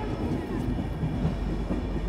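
Passenger train running, a steady low rumble of the wheels on the rails, heard from the open door of the moving coach.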